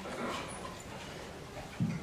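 Faint handling noise from a handheld microphone being passed to an audience member, with a short low thump near the end.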